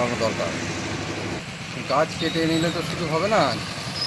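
Steady road traffic noise with a low vehicle engine hum that eases off about a second and a half in, under a man speaking in Bengali in short phrases.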